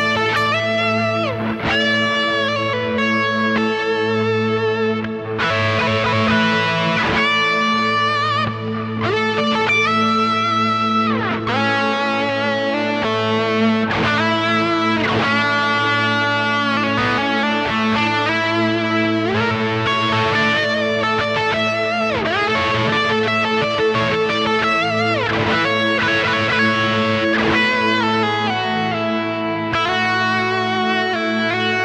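Electric guitar playing an improvised lead of single notes with string bends, over a steady ambient pad held on A.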